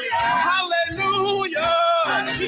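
Gospel praise team singing in harmony, holding and bending long wordless notes over a low, steady musical accompaniment.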